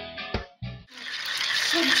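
A few plucked guitar notes end in the first second. Then a homemade demonstration electric motor, its large exposed armature spinning between two wire coils, runs with a steady rattle that grows louder, with faint voices under it.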